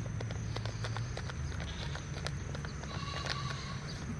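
Light plastic clicks and crackles from a thin plastic nursery pot being squeezed and worked to ease out a basil seedling and its root ball, over a steady low hum.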